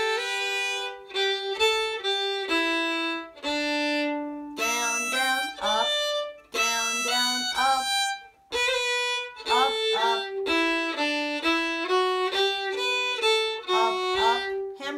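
Solo fiddle bowing an old-time tune in G slowly, phrase by phrase with short breaks between phrases. It opens with a hammer-on into the B part, and two strings sound together in places.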